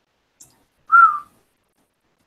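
A single short whistle-like tone, gliding slightly down in pitch, about a second in.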